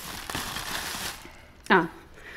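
Clear plastic bag rustling and crinkling as a hand rummages inside it, fading out after about a second.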